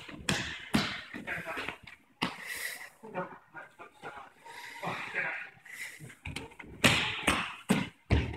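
Grapplers breathing hard and moving on judo mats, with scattered thumps and slaps, mixed with short spoken remarks.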